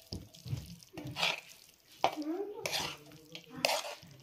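A metal spoon scraping thick okra curry out of a metal pan onto a steel platter, in three scrapes.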